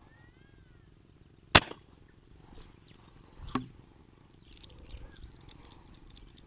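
A slingshot fishing rig fires an arrow into a canal with one sharp snap of the released bands about one and a half seconds in. A softer click follows about two seconds later.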